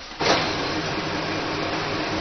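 Office photocopier starting up a copy run: it comes on suddenly just after the start, then runs steadily with a machine hum and whir.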